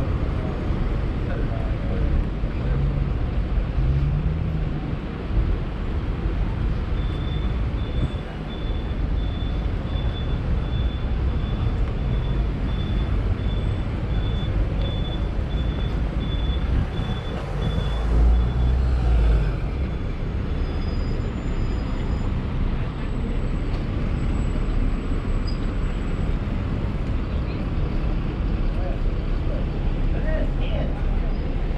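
Busy city-street traffic: a steady low rumble of passing cars and buses, with one louder vehicle going by a little past halfway. Through the middle a high, evenly repeated beeping sounds, and people's voices can be heard now and then.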